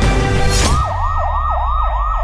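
Electronic police-style siren in a fast yelp, rising and falling about three to four times a second, starting when loud music cuts off under a second in.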